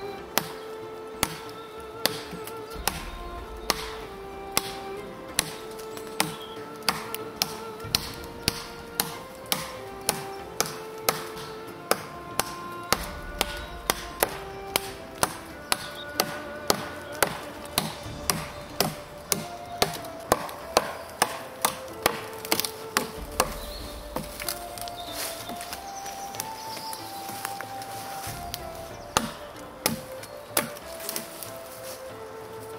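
Fällkniven A1 Pro survival knife chopping through a fist-thick branch, the blade striking the wood in a steady run of chops, roughly two a second, under background music.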